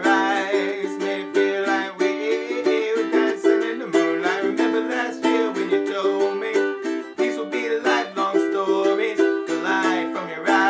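Ukulele strummed in a steady rhythm through an Am–G–D–Em chord progression in G major, with a man's voice singing over it at times.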